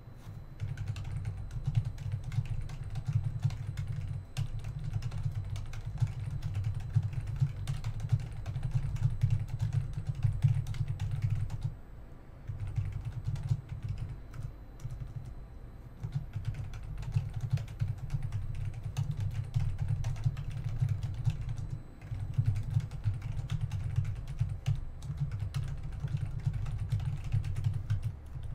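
Fast typing on a computer keyboard: dense runs of keystrokes with a low thud under them, pausing briefly about twelve and twenty-two seconds in.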